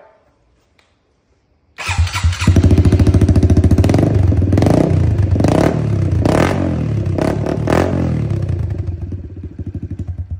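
A 2023 Honda CRF110F's single-cylinder four-stroke engine, breathing through a newly fitted BBR D3 exhaust, starts suddenly about two seconds in and runs with a pulsing beat. It is revved in several short throttle blips, then its beat slows and fades near the end as it shuts down.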